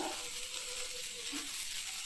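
Steady frying sizzle of a spiced pea, onion and tomato masala in a nonstick pan as a spatula stirs dry rolled oats through it, with a short click near the start.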